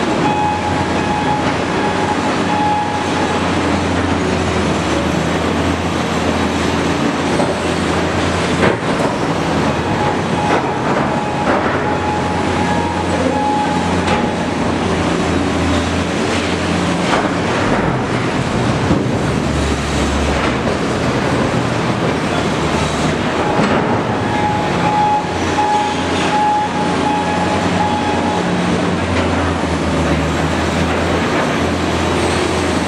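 Large wheel loader's diesel engine running steadily under load while it clears blasted rock in a tunnel, the sound echoing off the tunnel walls. A high whine comes and goes over the engine drone, and there is a single sharp knock about nine seconds in.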